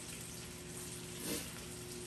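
Low, steady hiss of room noise with a faint steady hum, and a brief faint murmur a little past the middle.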